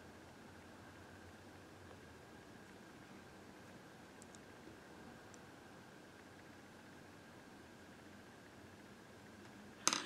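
Quiet room tone: a steady faint hiss with a thin, faint high hum, two tiny ticks near the middle and a sharp click just before the end.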